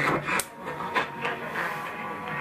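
Scratchy splatter hash from the 50 kW station 850 KOA, heard through the Hammarlund SP-600 receiver's speaker while it is tuned to the adjacent channel. A sharp click comes about half a second in, and after it the hash drops in level: the antenna phaser has been switched in and is nulling the interfering station.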